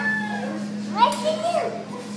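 A toddler's voice: a held, high vocal sound trails off, then about a second in comes a short burst of rising, wordless babble and squealing.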